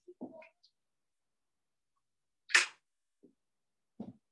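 Handling noises from a laptop or webcam being moved: a few faint knocks at the start and one short, loud rustling burst about two and a half seconds in.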